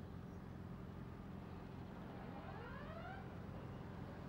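Faint low steady engine hum of outdoor background, with a faint rising tone about two seconds in.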